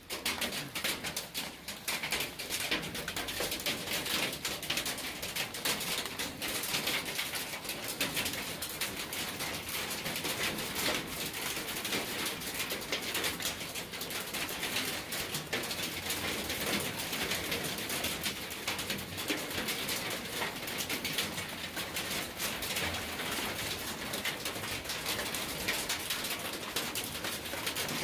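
Hailstorm: a dense, steady clatter of many hailstones, some of them big, striking wet gravel and concrete.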